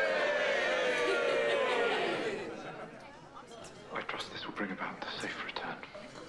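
Several voices let out a long, drawn-out group exclamation on the episode's soundtrack. It fades after about two seconds into quieter murmuring and short remarks.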